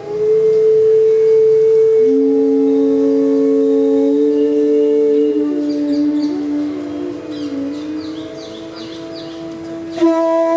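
Bansuri flutes holding long, slow notes of a Hindustani classical alap in raag Parmeshwari. A second, lower flute note joins about two seconds in, and the lines glide gently between pitches. Faint, short high-pitched sounds come in a run through the second half.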